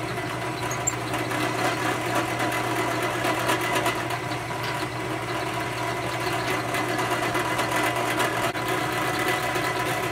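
Drill press motor running steadily while its bit is fed down into a wooden pen blank clamped in the vise.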